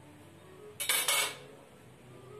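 Cut pine blocks handled on a table saw's metal table: one short clattering scrape about a second in, lasting about half a second, as the blocks knock and slide against each other and the table.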